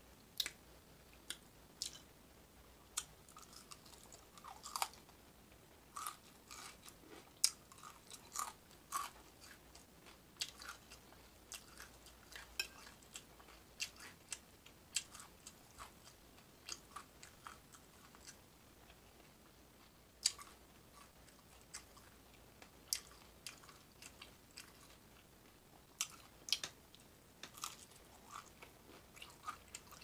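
Close-up eating sounds: a person chewing and crunching a breakfast plate of bacon, hash browns, sausage, eggs and biscuit, with many irregular sharp clicks and crunches.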